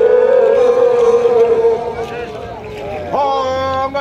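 A horn blown in long steady notes: one held note ends just before the two-second mark, and a second held note sounds briefly near the end.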